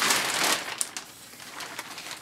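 Rustling and crinkling handling noise, loudest in the first half-second, then thinning out to scattered light clicks.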